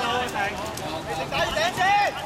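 Players' voices calling out across a five-a-side football court, with a few short knocks of the ball being kicked and of running feet on the wet surface.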